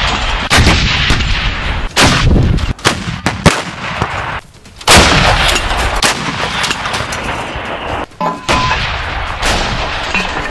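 Towed artillery howitzers firing: a string of about six heavy blasts, each followed by a long rolling rumble, the loudest about five seconds in.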